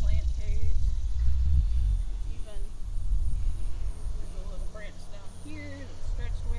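Low, uneven rumbling noise, strongest in the first two seconds, with faint snatches of a voice now and then.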